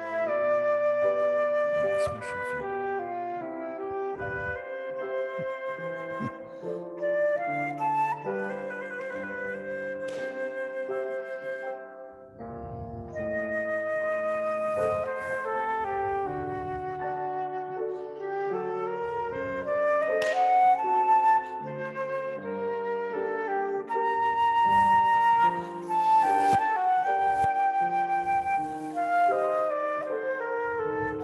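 Concert flute playing a melody with piano accompaniment beneath it, with a short break between phrases about twelve seconds in.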